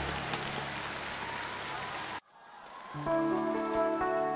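Live concert audience applauding after a song, cut off abruptly about two seconds in. After a brief gap, the soft instrumental intro of the next song begins with sustained chords.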